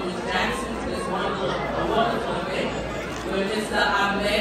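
A woman speaking into a handheld microphone over a hall PA, with crowd chatter underneath.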